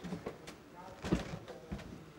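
A man's faint, muffled voice and breath as he chokes up with emotion, with a couple of soft brief knocks.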